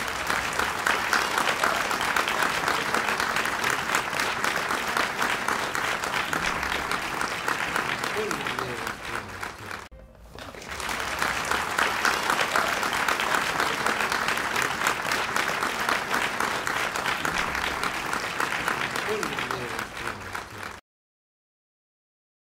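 Audience applauding after a tango song ends, a dense steady clapping that dips briefly about ten seconds in, picks up again, and cuts off suddenly near the end.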